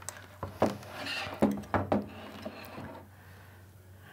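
Handling noise from a small metal-cased HF radio and its cables being turned around on a desk: about half a dozen light knocks and clicks in the first two seconds, then quieter rustling.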